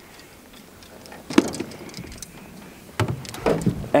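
Fishing rod and reel being handled: a few scattered clicks and light knocks, starting about a second in after a quiet moment and growing busier near the end.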